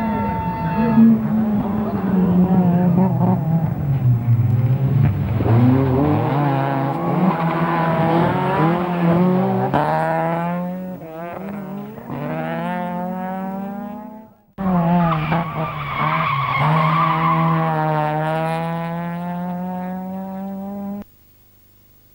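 Rally car engines revving hard as the cars pass, the pitch climbing and falling in steps with gear changes and lifts off the throttle. The sound breaks off suddenly about two-thirds of the way through, comes back with another car accelerating hard, and cuts out shortly before the end.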